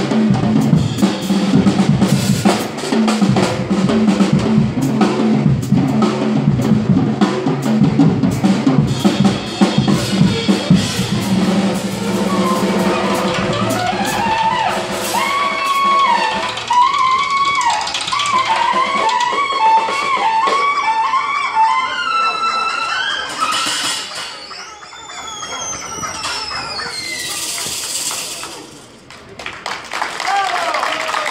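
Live drum kit and saxophone duo playing: busy drumming for the first ten seconds or so, then saxophone phrases over lighter drums, ending with falling glides and a brief hissing wash just before the piece stops.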